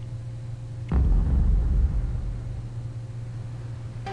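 The soundtrack of a GoPro video ad starting to play through the computer about a second in: a sudden loud low rumble that eases after about a second into a lower, steady rumble. A steady low electrical hum runs underneath.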